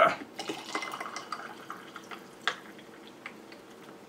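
Orange juice being poured from a plastic bottle into a cocktail shaker holding ice: a faint liquid pour with scattered small clicks and clinks, the sharpest about two and a half seconds in.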